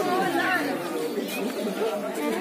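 Overlapping chatter of a group of people talking at once, with no single voice standing out.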